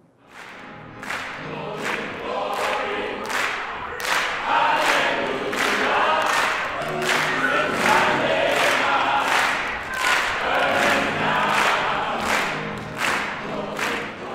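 Church choir singing a gospel song, with steady handclaps on the beat, about three claps every two seconds. It fades in at the start and grows fuller about four seconds in.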